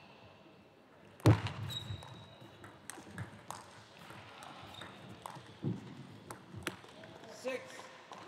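Table tennis rally: the ball clicking sharply off rackets and table at irregular intervals, opening with a loud thump about a second in. A short voice cry near the end.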